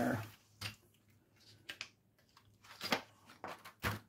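Pages of a glossy magazine being handled and turned open: several short paper rustles and crackles spread through the few seconds.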